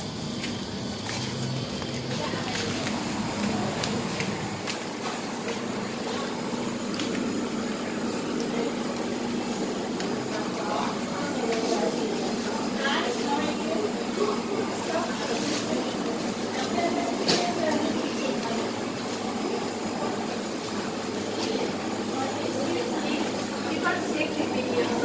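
Busy indoor market ambience: indistinct chatter of many people over a steady low hum, with a few sharp clinks and knocks scattered through it.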